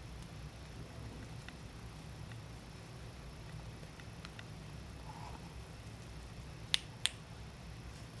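Quiet room tone with a few faint ticks, then two sharp clicks about a third of a second apart near the end.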